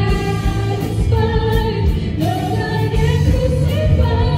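A live praise-and-worship band: several singers singing a worship song together over band accompaniment, played loud through the hall's PA.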